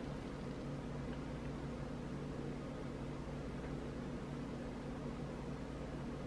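Steady low hum with an even hiss, unchanging throughout: room tone from a running fan or appliance, with no other sound standing out.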